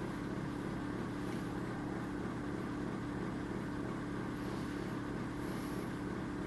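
Steady low electrical-sounding hum with faint hiss, unchanging throughout: room tone with no distinct event.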